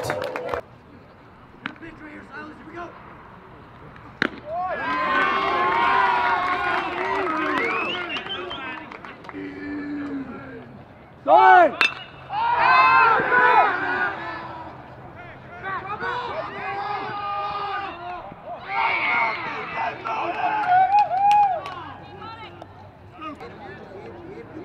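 Players and spectators at a baseball game shouting and cheering in several bursts, with a sharp crack of a bat hitting the ball about halfway through.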